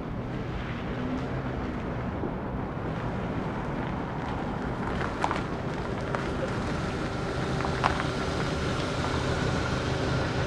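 A Kia sedan's engine and tyres as it drives slowly up and stops close by: a steady low rumble that grows gradually louder, with a couple of faint clicks midway.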